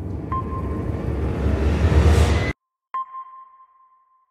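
Outro sound effects: bass-heavy music with a rising whoosh builds up, then cuts off abruptly. After a brief silence, a single sharp sonar-like ping rings out and fades away.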